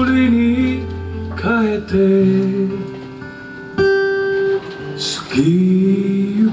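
Live band music: strummed acoustic guitars and electric bass under a singing voice that scoops up into long held notes.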